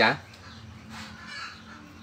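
Faint bird calls and chatter in the background, right after a spoken word ends at the very start.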